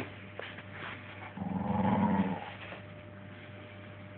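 A Staffordshire bull terrier growls once, a low growl lasting about a second, midway through.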